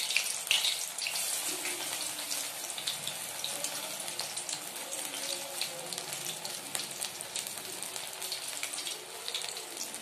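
Vegetable pakoras in gram-flour batter deep-frying in hot mustard oil in a steel kadai: a steady, bubbling sizzle.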